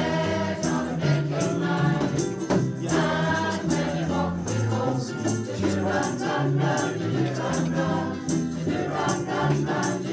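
Women's community choir singing together over a low accompaniment, with a steady rattling percussion beat keeping time.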